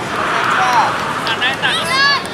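High-pitched shouting voices of children over a general outdoor murmur: one falling call around the middle, then several short overlapping shouts near the end.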